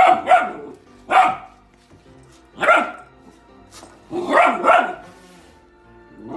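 Golden retriever puppy barking, about six short barks spaced out over a few seconds, some coming in quick pairs.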